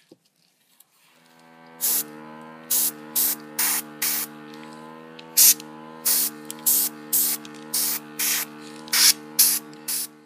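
A small airbrush compressor starts up about a second in and runs with a steady hum. The airbrush fires more than a dozen short, sharp bursts of air hiss as the trigger is pulled again and again, blowing the wet alcohol ink across a ceramic tile.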